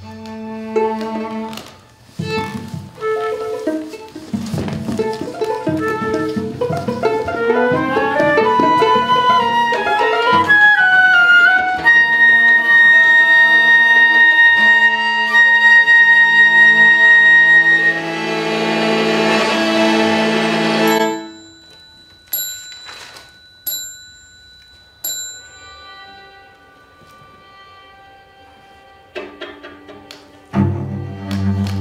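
Live chamber ensemble of flute, clarinet, violin, viola and cello playing: short detached chords and rising runs build into loud held notes with one bright high sustained tone, which cut off suddenly about two-thirds of the way through. A few short sharp notes and a quiet stretch follow before the playing resumes near the end.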